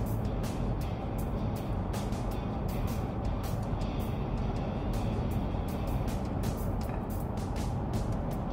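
Steady road and engine noise inside the cab of a 2022 Ford F-150 cruising at highway speed, about 74 mph, with music playing in the background.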